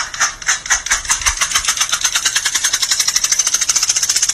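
A cat's hind paw scratching rapidly against its plastic cone collar, a fast, even scraping rattle of about eight to ten strokes a second that gets slightly quicker.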